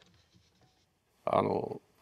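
Near silence, then a man's short spoken sound about a second and a half in.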